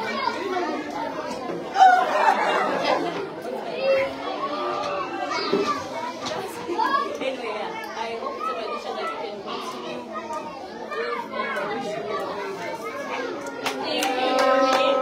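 A roomful of young children chattering and calling out over one another, with a loud burst of voices about two seconds in.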